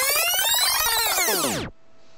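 Synthesized intro sting: a sweep of many pitched tones that rise and then fall together, stopping suddenly near the end, followed by faint room tone with a steady hum.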